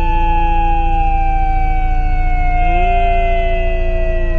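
Police vehicle hooter (siren) sounding one long wail that falls slowly in pitch, with a lower tone underneath that steps up near the end. It is the growling tone police sound to warn criminals they are ready to catch them.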